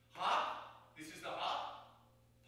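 A man's voice speaking two short, unclear phrases about a second apart, over a steady low hum. It is recorded through a faulty microphone.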